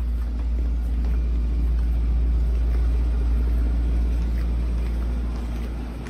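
Steady low rumble of handling and movement noise on a handheld camera microphone as it is carried along. The rumble swells through the middle and eases near the end.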